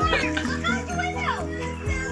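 Children's voices played back through a phone's speaker from an old home video, over steady background music.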